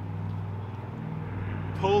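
A steady low mechanical hum made of a few even, unchanging tones, like an engine or machine running at a constant speed.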